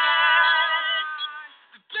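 A man singing one long held note that fades away about a second and a half in. The recording is thin and lo-fi, with no high end.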